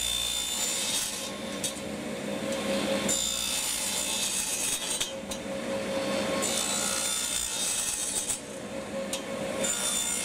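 Radial arm saw running and crosscutting maple dowels to length, several cuts in a row. The bright cutting noise rises and falls with each pass of the blade over the steady sound of the motor.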